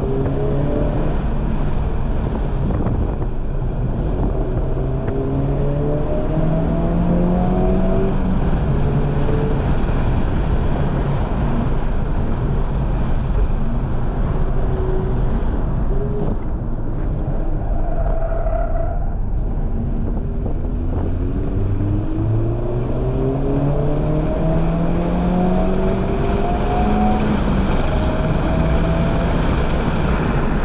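Honda Civic Type R FL5's turbocharged 2.0-litre four-cylinder engine heard from inside the cabin under hard acceleration, its pitch climbing in steps with a drop at each upshift, over loud road and wind noise. It eases off a little past halfway, then pulls up through the gears again.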